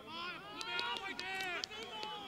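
Men's voices shouting and calling out on a football pitch, with a few short sharp knocks among the shouts.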